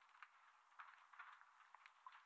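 Near silence, with faint rustling and small clicks: a microfiber towel wiping a metal camshaft bearing cap.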